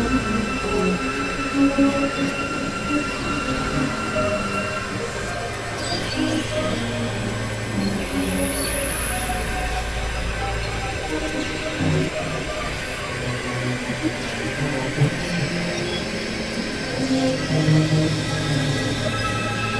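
Experimental electronic drone and noise music: layered, sustained synthesizer tones with a grinding, squealing texture over a low drone that drops out about eight seconds in.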